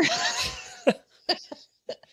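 A person laughing, the laugh fading away over the first second, followed by three brief sharp sounds, like short laughing breaths.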